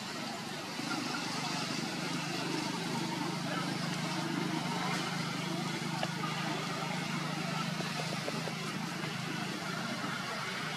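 Steady outdoor background noise with a low engine-like hum of motor traffic that grows a little louder about a second in.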